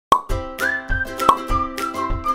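Upbeat intro jingle with a steady kick-drum beat and a bright melody that glides upward briefly, opening with a sharp pop sound effect and another pop about a second later.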